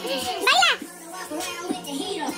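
A child's loud, high squeal rising and falling in pitch about half a second in, with children's voices over music.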